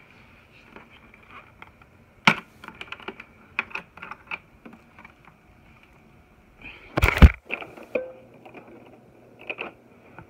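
Plastic clicks and knocks of a Quantum water-filtration vacuum's tight latches and top being worked open and handled, with a sharp knock a couple of seconds in and a louder thump about seven seconds in.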